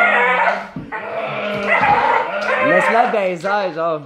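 Bull terrier making a drawn-out, pitched vocal noise while tugging on a toy: at first a steady held tone, then wavering up and down in pitch in the second half. It is the "weird noise" of a dog vocalising during tug-of-war play.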